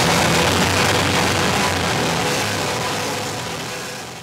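Live screamo band's loud distorted guitar and bass, recorded up close from the front of the stage, slowly fading out.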